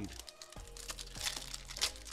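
Foil Pokémon Go booster pack wrapper crinkling irregularly as it is handled.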